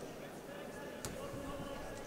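Faint arena ambience with distant voices, and a single sharp tap about a second in, typical of a bare foot or glove on the ring.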